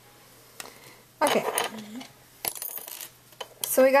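A small metal tool clattering as it is put down, about a second in, followed by a lighter clink and rattle a little later; a woman's voice starts speaking at the very end.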